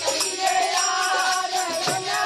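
Group of men singing a Bundeli phag, a Holi folk song, together, over a steady beat of jingling hand percussion.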